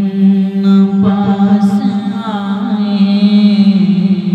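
A man singing an Urdu naat unaccompanied into a microphone, holding one long drawn-out note with wavering ornaments in the middle of it.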